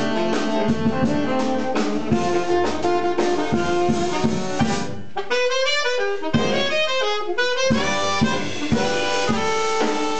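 Small jazz combo playing live: two saxophones over upright double bass and drum kit. About five seconds in, the bass and drums drop out for a couple of seconds while the saxophones play a fast run of notes, then the full band comes back in.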